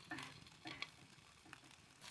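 Near silence, with a few faint handling noises of a raw whole chicken being set upright on a cone in a cast iron pan, including a small click a little under a second in.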